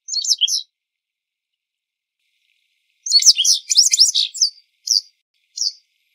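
Japanese wagtail calling: a short, high-pitched call at the start, then after a pause of over two seconds a rapid run of sharp notes lasting about a second and a half, followed by two single notes near the end.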